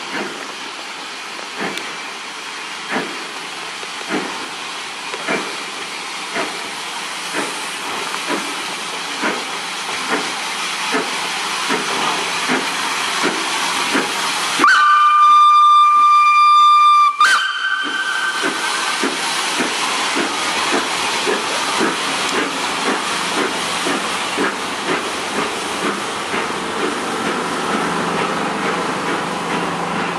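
SNCF 241 P 17 steam locomotive, a 4-8-2, pulling away with a train: exhaust chuffs over a steady steam hiss, the beats quickening from about one every second and a half to several a second as it gathers speed. About halfway through its steam whistle gives a loud blast of over two seconds, ending on a short, slightly higher note.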